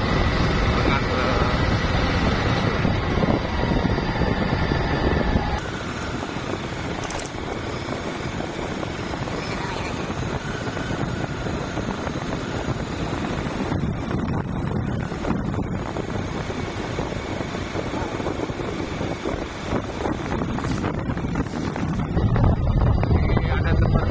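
Motorbike engine running and wind rushing over the microphone while riding. About five and a half seconds in, the sound drops abruptly to a quieter, even rush, and it grows louder again near the end.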